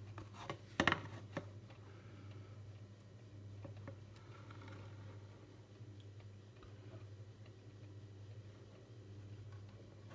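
A metal spoon knocking a few times against a plastic ready-meal tray in the first second and a half, then faint stirring sounds in the curry over a low steady hum.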